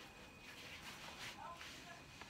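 Quiet moment with faint rustling of the soft carrier's fabric and straps as they are adjusted on the wearer, and a brief faint voice sound about halfway through.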